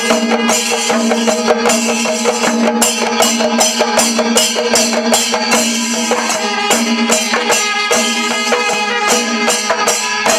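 Temple percussion ensemble playing a dense, fast rhythm. Several hand drums are struck with the palms, along with jangling brass hand cymbals, over a steady held note underneath.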